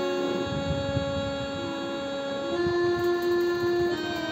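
Electronic keyboard played on a harmonium voice: sustained notes held steadily, stepping up to a higher note about two and a half seconds in.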